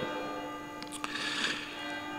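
Church bell ringing faintly: a steady hum of several held tones, the lowest one the strongest, with a couple of faint ticks about halfway through.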